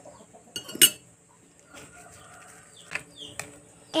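A chicken clucks once, loudly, about a second in, with faint clinks of a metal spoon against a ceramic bowl later on.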